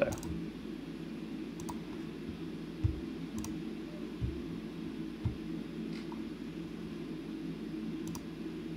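A few faint computer mouse clicks over a steady low room hum, with several soft low thumps.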